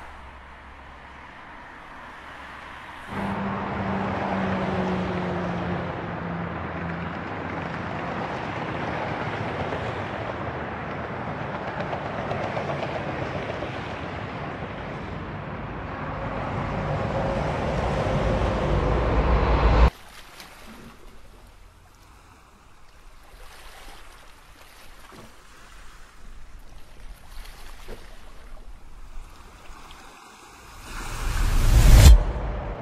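Road traffic noise that jumps louder a few seconds in, with a falling engine tone, and swells steadily for about twenty seconds before cutting off suddenly. A much quieter hiss with faint surf-like noise follows.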